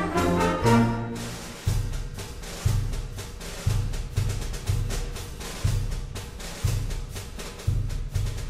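Symphonic band playing a march: a full held chord in the first second or so, then a percussion passage of low drum strokes about once a second with lighter drum strokes between.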